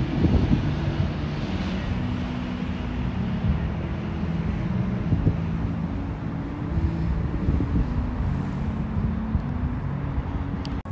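Steady city road traffic: a continuous low rumble of vehicles passing on a wide street, with faint engine hum.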